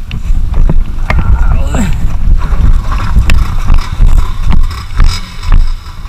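Motorcycle riding on a rough dirt track: the engine's low rumble mixed with wind buffeting the microphone, and scattered short knocks as the bike jolts over the stony surface.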